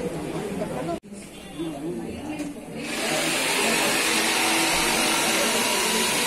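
Indistinct voices of people talking in the background, broken by an abrupt cut about a second in. From about three seconds in a steady hiss comes up under the voices.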